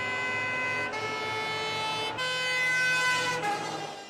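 Fire truck siren sounding in steady tones that step to a new pitch about every second.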